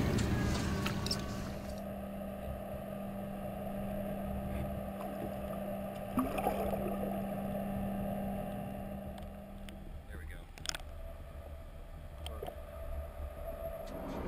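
Low, steady hum of a boat engine idling, its tone dropping away about ten seconds in, with a few small knocks.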